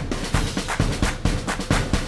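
Instrumental break in a children's pop song: a quick, steady drum-kit beat with bass drum and snare, with no singing.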